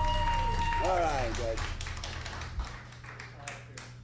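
A held note from the band rings out and stops about a second in, a voice briefly calls out, then scattered clapping from a small audience over a steady low amplifier hum.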